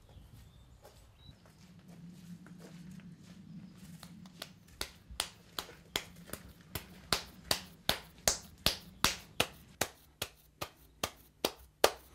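A steady run of sharp taps, about three a second, starting about four seconds in and growing louder, over a faint low hum.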